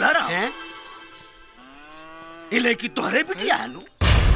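Cattle mooing: a short call at the start, then longer drawn-out moos through the second half, over faint background music.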